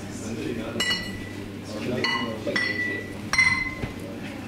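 Glassware clinking about four times, each clink ringing briefly with a clear high tone, over a murmur of crowd chatter.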